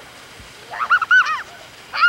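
A child's high-pitched squeals: a quick run of short rising-and-falling notes about two-thirds of a second in, and another run starting at the very end.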